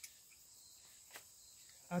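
Faint, steady high-pitched insect chirring in the background, with two light clicks about a second apart.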